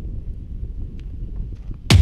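Wind buffeting the microphone as a steady low rumble, then near the end music cuts in suddenly with a hard drum hit.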